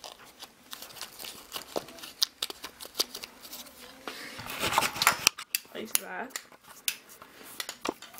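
Close handling noises: scattered small clicks and paper rustling, with a louder scraping rustle about halfway through, as a strip of thick card paper is worked in between an RC truck's pinion and spur gears.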